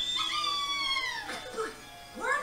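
A high-pitched, drawn-out squeal, like a cartoon character's voice, from the episode's soundtrack. It holds and then slowly falls in pitch over about a second and a half, with music underneath.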